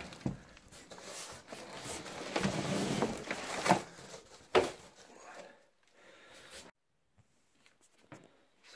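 Cardboard rustling and scraping as a shipping box is opened and its packing handled, with a couple of sharper knocks in the middle, fading out about five seconds in.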